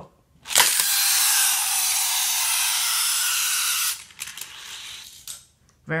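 Motorized lift of a Hot Wheels Track Builder Lift & Launch toy track set running with a steady buzz for about three seconds, starting with a click and cutting off abruptly. A fainter noise with a few clicks follows.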